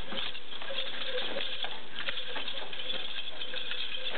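Scattered light taps and soft thuds from two people's nunchaku routine, their feet landing and stepping on foam mats, over a steady background hiss.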